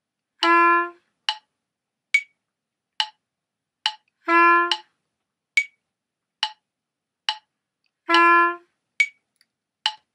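Metronome clicking steadily at 70 beats per minute. Over it, a melody instrument plays three short notes of the same pitch, each about an eighth note long and about four and a half beats apart, so each note lands one eighth later in the measure than the one before: an offset eighth-note rhythm exercise.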